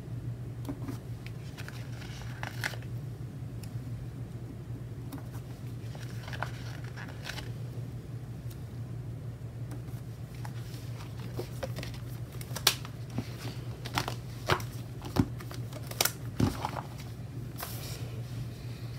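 Small football stickers being peeled off their sheet and pressed onto a paper wall calendar: soft paper rustling, then a run of sharp little clicks of fingers and nails tapping the paper in the last few seconds, over a steady low hum.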